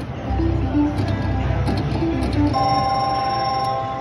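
Slot machine playing short electronic notes as the reels spin. From about two and a half seconds in, a steady bell-like ringing plays as a small win of credits is paid.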